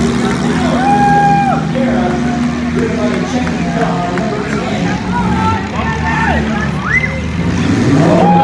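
Several demolition derby cars' engines running and revving unevenly, with voices over them.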